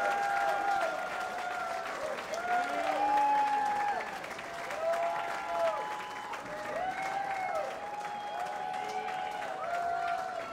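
Audience applauding and cheering, with drawn-out whoops that rise and fall in pitch over the clapping.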